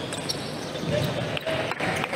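Table tennis ball clicking sharply off paddles and table as a rally plays out and ends, a few separate knocks over the murmur of voices in a busy hall.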